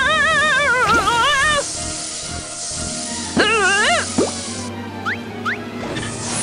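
Cartoon sound effects over background music: a warbling, wobbling tone through the first second and a half and again briefly about three and a half seconds in, then two short rising bloops near the end.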